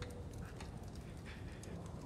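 A quiet hush with a few faint, soft clicks scattered through it.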